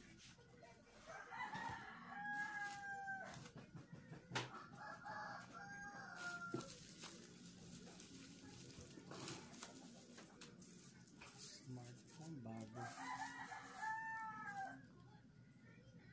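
A rooster crowing three times, each crow about two seconds long and ending on a held note; the crows come about a second in, at about four and a half seconds, and near the end. Between them are soft rustling and a sharp click from a cardboard box being handled.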